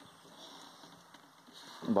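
Near silence: faint background hiss with a few small ticks, then a man's voice starts a word near the end.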